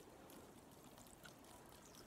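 Faint, steady trickle of water poured from a water bottle onto icy asphalt shingles.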